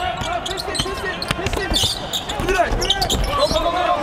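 Basketball being dribbled on a hardwood court during live play, with repeated short bounces amid voices on the court.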